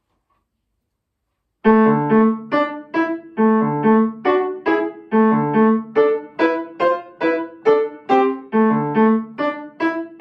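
Upright piano played solo: after a short silence, a lively piece begins in a steady rhythm of short, separate notes, a repeating figure played over and over.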